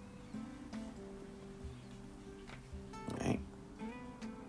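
Quiet background music with soft held notes.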